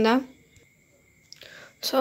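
Speech with a short pause. A voice ends a phrase, then near silence, then a faint click and a breathy whisper before a short spoken syllable near the end.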